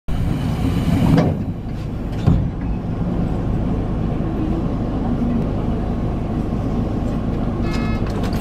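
Electric commuter train pulling slowly away from a station, heard from the driver's cab: a steady low rumble of motors and wheels on the rails, with two louder knocks about one and two seconds in.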